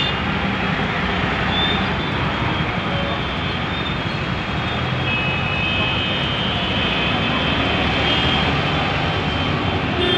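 Steady roadside din of traffic, with a city bus's engine running as it passes close by, and voices of a crowd mixed in.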